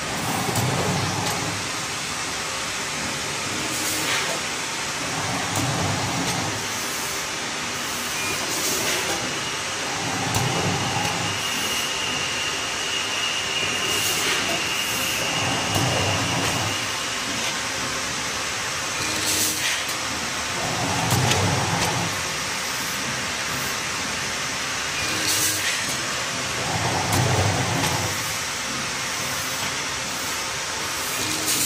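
Vertical form-fill-seal pouch packing machine running with a steady hiss. A low rumble about a second long comes about every five seconds, with a sharp click between each pair, repeating with each pouch-making cycle.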